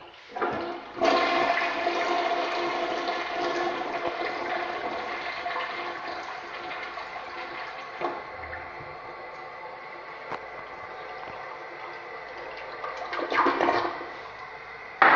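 American Standard Plebe toilet flushing. Water rushes in about a second in with a whistling note running through it, then eases to a steadier, quieter hiss as the bowl refills, with a brief louder surge near the end.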